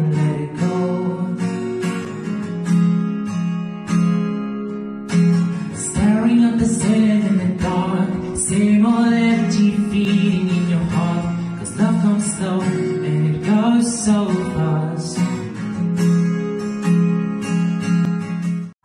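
A man singing a song in English to a strummed acoustic guitar.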